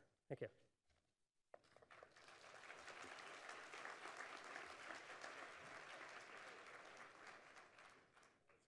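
Audience applauding, starting about a second and a half in and tapering off near the end.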